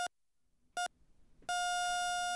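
Heart monitor beeping at a steady pace, twice, then going into one continuous flatline tone about one and a half seconds in: the patient's heart has stopped.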